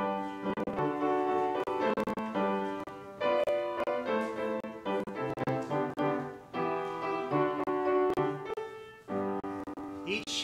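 Piano playing the instrumental introduction to a hymn: sustained chords changing every second or so, with a brief pause near the end.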